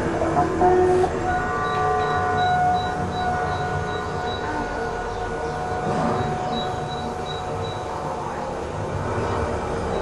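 A steady rumbling noise with a few thin high tones held over it and a faint, intermittent high pulsing, easing slightly in loudness after the first few seconds.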